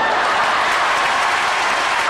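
Theatre audience applauding, a dense, steady clapping.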